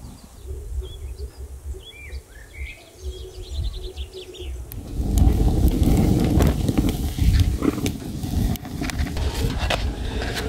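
Small birds chirping, with a short trill, over faint outdoor background. From about halfway, louder crackling and popping of a wood fire burning in the firebox of a sheet-metal stove.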